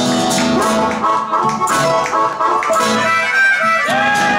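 Blues band playing live: two acoustic guitars play an instrumental passage. Near the end, a harmonica slides up into a long held note.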